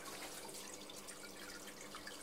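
Aquarium water trickling and dripping, many small light drips over a faint steady low hum.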